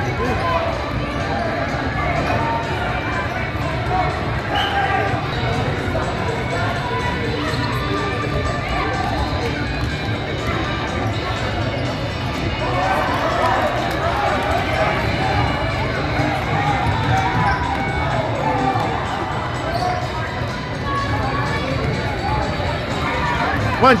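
Gym ambience during a youth basketball game: steady chatter and calls from spectators and players echoing in the hall, with a basketball bouncing on the hardwood floor.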